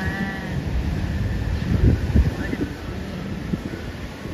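Wind buffeting the microphone on a high, open ship deck, gusting hardest about two seconds in. Right at the start there is a brief, high, pitched call lasting about half a second.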